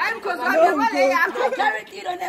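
A group of people chattering, several voices talking over one another.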